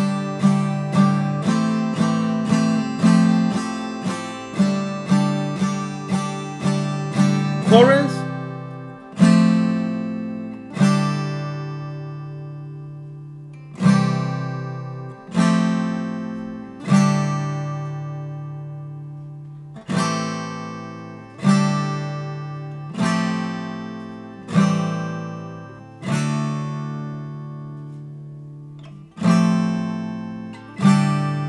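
Acoustic guitar, capo at the fifth fret, strummed through a progression of open chords: quick repeated strums, about two a second, for the first eight seconds, then single strummed chords left to ring, one every one and a half to two seconds.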